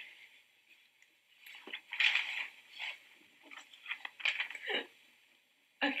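Playing cards being handled and laid down on a table: a few short, soft sliding and tapping sounds at irregular moments, starting about a second and a half in.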